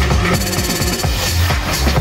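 Electronic dance music from a live DJ set, with a steady pounding bass beat under dense synth sounds.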